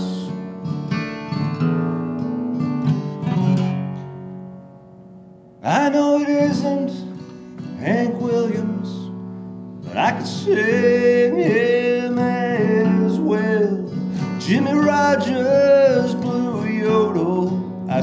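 Solo acoustic guitar playing a folk song live. The guitar rings down almost to nothing about five seconds in, then comes back with a strum, and the man's singing voice joins over it in the second half.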